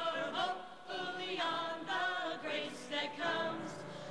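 A small mixed group of men and women singing together, unaccompanied.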